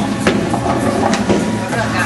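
Bowling alley din: loud background music over crowd chatter, with a couple of sharp knocks.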